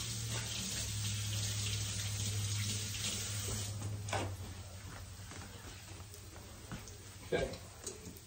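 Kitchen sink faucet running while hands are washed under it, the flow stopping about halfway through. A few light knocks follow.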